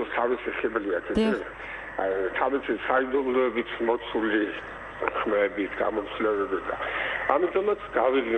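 Speech throughout, dialogue from a film excerpt, with the sound cut off above the middle range. A short click about a second in.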